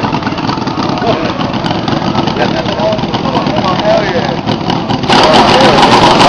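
Miniature V8 model engine running with a fast, even firing rhythm, under voices. It gets louder and brighter about five seconds in.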